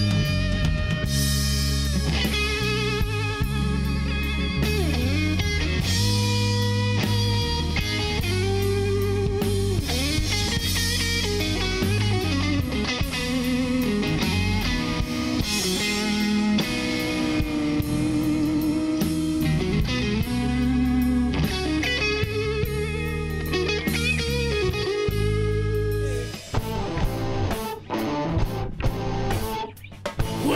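A live rock band with a Stratocaster-style electric guitar playing lead lines over bass and drums, with held, bending notes and no vocals. Near the end the music breaks up into short stops and starts.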